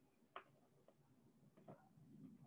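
Near silence on a video-call line, with a few faint clicks: one about half a second in, and softer ones later.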